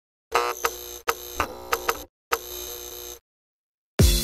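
Electric buzzing sound effect that cuts in and out with sharp clicks, in two stretches, stopping a little after three seconds.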